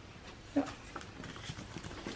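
Faint light clicks and rustles of a photo book's stiff pages being handled and turned.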